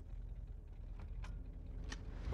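Low, steady rumble of a car's engine and road noise heard from inside the cabin, with a few faint clicks.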